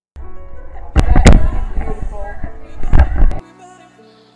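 Loud, distorted sound from a small camera's microphone: voices and heavy knocks and rumble, with the hardest knocks about a second in and again about three seconds in. It starts and stops abruptly.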